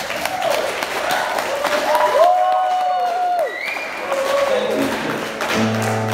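Live band music: acoustic guitar with a melody line that slides up, holds and slides back down, and the audience clapping. A low sustained bass note comes in near the end.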